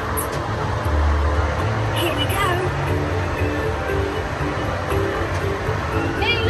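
Music playing from the ride car's onboard soundtrack over a steady low rumble of the ride vehicle running along its track.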